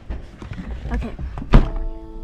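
A car door shut with one solid thunk about one and a half seconds in, followed by a brief steady tone.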